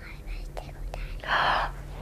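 A young girl whispering into a woman's ear: a short breathy whisper near the middle, with no voiced pitch.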